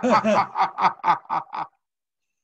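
A person laughing: a quick run of short "ha" pulses, about six a second, stopping near the end.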